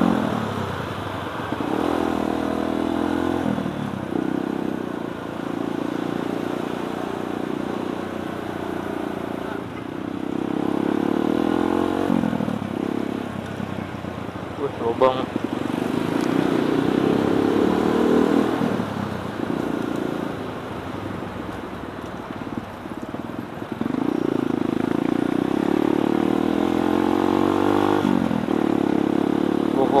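Kawasaki D-Tracker 150 SE's single-cylinder four-stroke engine under way, heard from the rider's seat. Its pitch rises under throttle and drops back at each gear change, again and again.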